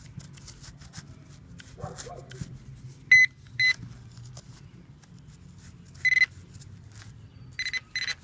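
Handheld metal-detecting pinpointer giving about five short, high beeps as it is probed through a dug plug of soil, a pair about 3 s in, one about 6 s in and two more near the end: the signal of a coin in the dirt. Light scratching of soil and grass comes with it.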